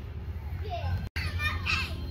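Voices of people, children among them, chattering in the background over a steady low hum. The sound drops out briefly about a second in at an edit cut.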